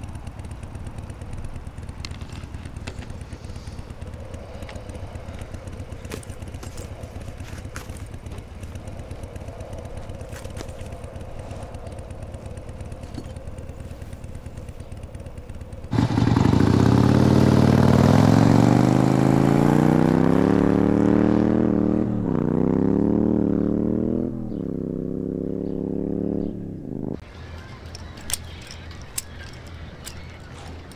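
A V-twin cruiser motorcycle pulling away and accelerating, its engine note rising and dropping back twice as it shifts up through the gears, then cutting off suddenly. Before it, a low steady rumble.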